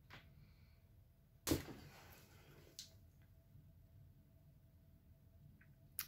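Quiet handling of a sterling-silver-wire-wrapped pendant: a few light clicks and taps of wire, the sharpest about a second and a half in, over low room tone.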